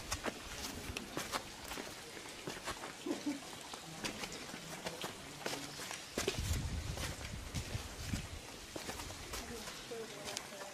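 Irregular sharp taps and clicks with faint, indistinct voices in the background, and a low rumble from about six to eight and a half seconds in.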